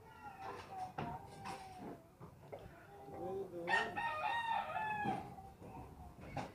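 Rooster crowing: two long crows, the second, louder one starting about three and a half seconds in.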